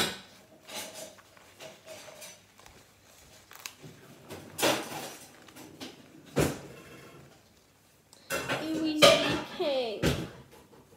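Paper towel being crumpled and rustled in the hands around broken eggshells, in a few short crinkling bursts. A girl's voice comes in near the end.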